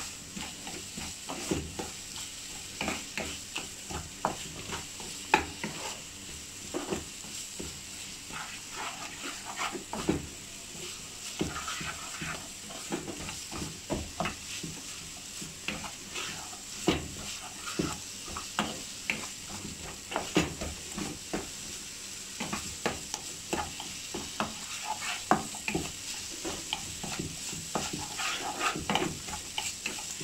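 Slotted wooden spatula stirring a thick onion-tomato masala in a kadai, with irregular knocks and scrapes against the pan, over a steady sizzle of the masala frying in oil.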